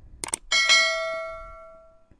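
A subscribe-button sound effect: two quick clicks, then a bell chime that rings with several overtones and dies away over about a second and a half.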